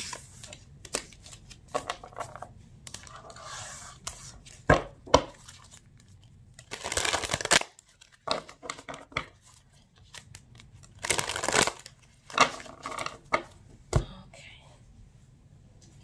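A deck of tarot cards being shuffled by hand: quick flicking and riffling of cards, with two longer shuffling bursts near the middle and a few sharp taps of the deck on a wooden table.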